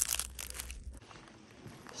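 Flaking sycamore bark crackling and tearing as it is peeled off the trunk by hand, a short run of sharp crackles in the first half second.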